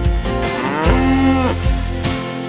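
A cow mooing once: one long call that rises and then holds, over background music.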